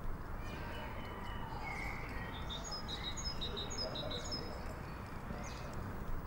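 Outdoor ambience: a steady low background noise with a small bird chirping a quick run of short, high, repeated notes in the middle.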